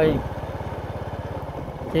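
Motorcycle engine running steadily as it is ridden, with an even, rapid low pulse and a faint hiss of wind and road over it.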